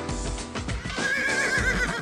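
Intro jingle music with a horse whinny laid over it. The whinny is a wavering, quavering neigh that starts about a second in and fades out near the end.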